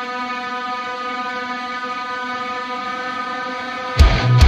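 Electronic music breakdown: a steady, held synthesizer drone chord with many overtones and no drums.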